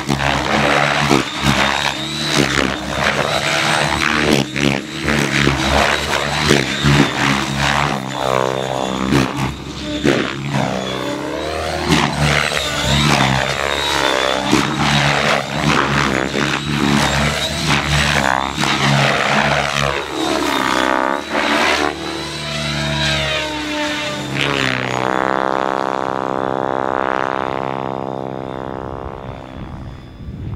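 Align T-REX 700X electric RC helicopter in flight, manoeuvring, its rotor and motor sound swinging rapidly up and down in pitch. Near the end it climbs away, the pitch falling and the sound growing fainter.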